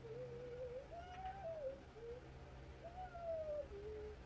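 A soft hummed tune, a single wavering pitch in a repeating pattern: a higher phrase sliding down, then a lower held note. A steady low hum runs underneath.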